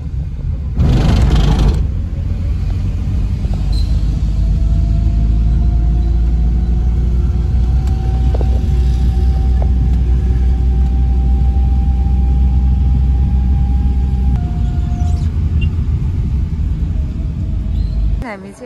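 Car cabin noise while driving on a wet road: a steady deep rumble of road and engine noise with a faint whine slowly rising in pitch. A brief loud rush comes about a second in, and the rumble eases off abruptly near the end.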